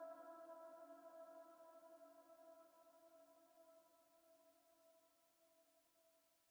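Final held chord of a piano fading slowly to near silence, several notes ringing together without a new strike.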